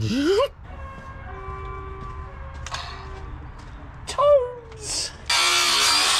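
An angle grinder starts about five seconds in and cuts into a metal fuel-tank strap on a truck chassis, a loud harsh grinding hiss.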